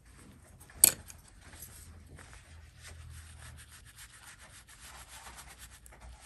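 Faint rubbing and scratching of a brush and hand moving over painting paper, with one sharp click about a second in.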